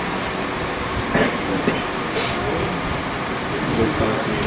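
Steady background hum and hiss of room noise, with three brief soft swishes between about one and two and a half seconds in.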